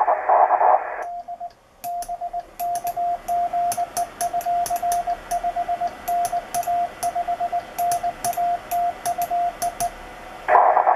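Yaesu VHF transceiver in CW mode: for about a second a raspy, hissing aurora-scattered Morse signal comes in, then it cuts out and a clean single-pitch sidetone keys out Morse code in dots and dashes while the set transmits. Short sharp clicks fall at many of the key-downs.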